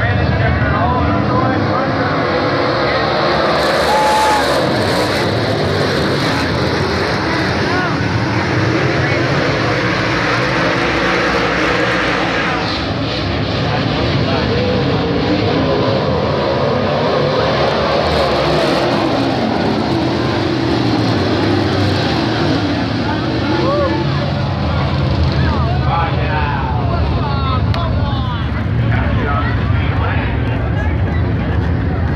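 A field of dirt late model race cars running on the track, their V8 engines making a loud, steady mass of engine noise with rising and falling pitch as cars pass.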